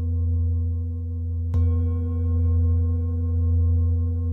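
Large Tibetan singing bowl resting on a client's lower back, ringing with a deep hum and a ladder of overtones. It is struck once with a padded mallet about one and a half seconds in, renewing the ring with brighter upper tones, and the sound swells and fades slowly as it rings.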